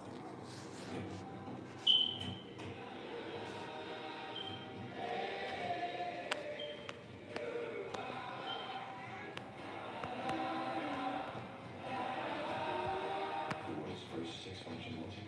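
A TV commercial soundtrack, mostly music, heard through a television's speaker and picked up by a phone across the room. A sudden bright accent stands out about two seconds in.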